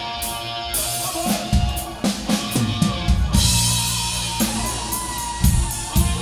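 Live rock band playing: electric guitar over a drum kit, with repeated drum and cymbal strikes.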